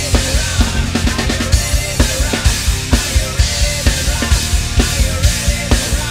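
Acoustic rock drum kit played in a steady driving beat, with bass drum, snare and cymbal crashes and a quick run of strokes about a second in, over a recorded rock song with guitars and bass.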